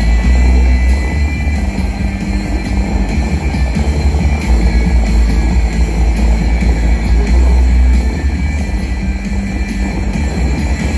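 Music from the Bellagio fountain show's loudspeakers, mixed with the steady rush of the fountain's tall water jets and a heavy low rumble.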